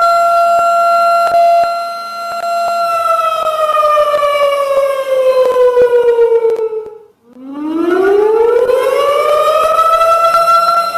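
Civil defense warning siren wailing at a steady pitch, then sliding down in pitch from about three seconds in, cutting out briefly around seven seconds, and winding back up to its steady wail near the end.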